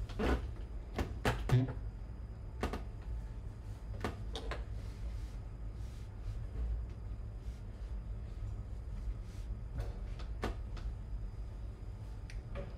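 Scattered light knocks and taps as a woodblock and tools are moved about and set down on a workbench, over a low steady hum.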